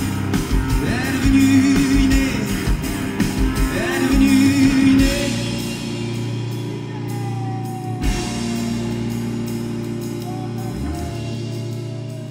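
Live rock band playing loud, with drum kit, electric guitars and bass and a voice over the first seconds. About five seconds in the drums stop and the guitars and bass ring on in held chords that slowly fade as the song closes.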